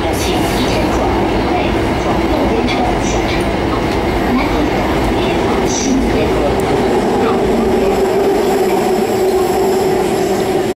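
Metro train running, heard from inside the passenger car: a steady loud rumble with a hum that grows stronger in the second half.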